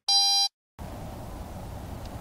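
A single electronic beep, one steady tone about half a second long, marking the switch to the next recording. It is followed by a moment of dead silence and then the faint background hiss of the next recording.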